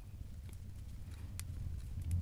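Metal knitting needles clicking faintly a few times as stitches are worked, over a low steady rumble.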